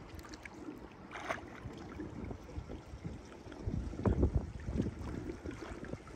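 Swimming-pool water sloshing and lapping around a swimmer moving upright in the water, with a few stronger splashes around four seconds in.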